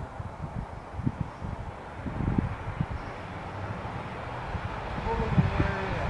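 Wind buffeting the microphone, an uneven low rumble, with a faint voice near the end.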